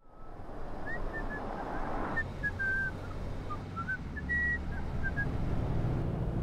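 A person whistling a slow, wandering tune in short notes, a couple held longer, over the low steady rumble of a car driving.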